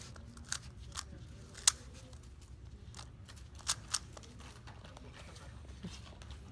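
Sharp plastic clicks of a 3x3 speedcube being turned with the feet: about five separate clicks at uneven spacing, the loudest about a second and a half in and two close together near four seconds, over a low steady room hum.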